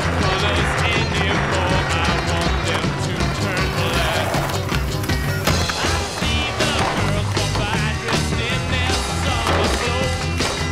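Music soundtrack with a steady beat, mixed with skateboard sounds: wheels rolling on pavement and the board's pops and landings.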